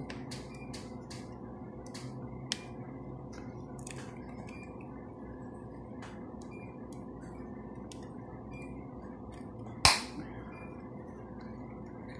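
Flat-head screwdriver prying at the glued plastic seam of a laptop charger case: a run of small sharp clicks and creaks as the stiff plastic is levered, with one much louder crack near the end as the glued seam starts to give.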